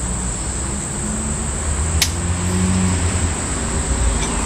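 A steady high insect trill goes on over a low rumble of passing road traffic, which swells in the middle. There is a single sharp click about two seconds in.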